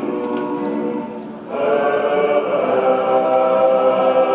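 Male vocal ensemble singing an Indonesian worship song in harmony to acoustic guitar. They hold a sustained chord, break off briefly about a second and a half in, then come back in with a new long-held chord.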